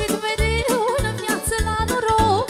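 Live Romanian folk party music: an ornamented melody with quick wavering turns over a steady bass-and-drum beat.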